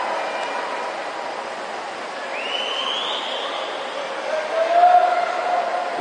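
Spectators cheering and shouting during a swimming race, a general hubbub with a rising high-pitched call about two seconds in and a louder held shout near the end.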